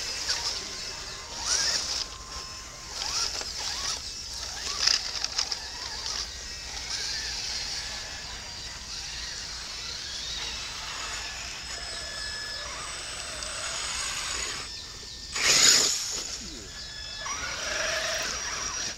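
Scale RC crawler trucks driving along a muddy trail, their small electric motors and geared drivetrains whining as the tyres squelch and crunch through mud and roots. Several trucks pass close, each one louder for a moment, and the loudest pass comes a few seconds before the end.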